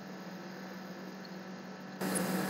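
Faint steady electrical hum with a light hiss: the recording's background room tone.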